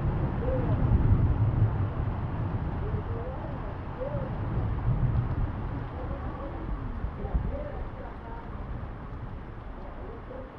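Steady heavy rain falling on a corrugated sheet-metal roof and the ground, slowly easing in loudness, with faint voices in the distance.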